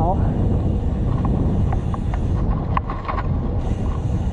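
Wind buffeting a bike-mounted camera's microphone while cycling along a road, a steady low rumble, with a few faint short ticks in the middle.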